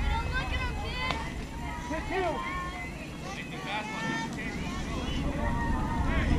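Young girls' voices calling and chattering across a softball field, high-pitched and scattered, over a low rumble. There is one sharp knock about a second in.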